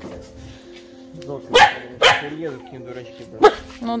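A dog barking a few short times, over steady background music.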